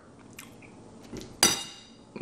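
A spoon clinks once against a ceramic bowl with a short ringing tone, about one and a half seconds in, after a faint tick or two.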